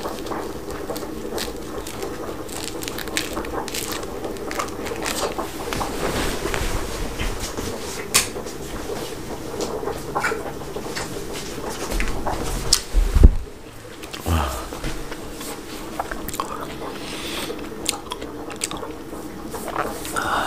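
Peeling and eating a mandarin orange: peel tearing, biting and chewing, in many small clicks and rustles. A loud knock comes about 13 seconds in.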